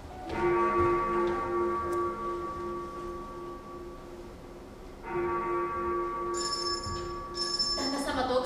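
Bell struck twice, about five seconds apart, each stroke ringing out and slowly fading, with brief high chimes near the end: a sound cue in a stage play's scene change.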